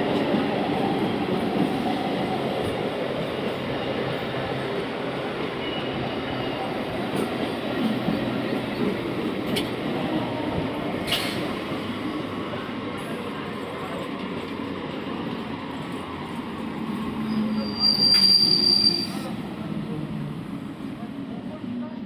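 Electric multiple-unit (EMU) local train running past at speed: a steady rumble of wheels on rails that eases slightly. A brief high-pitched squeal near the end is the loudest moment.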